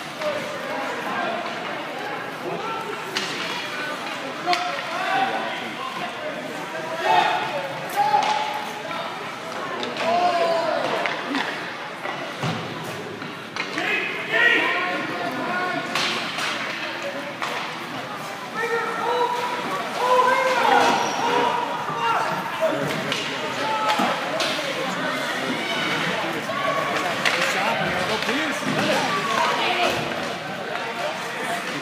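Ice hockey rink sound: spectators' voices and calls throughout, with scattered sharp knocks of puck and sticks against the boards.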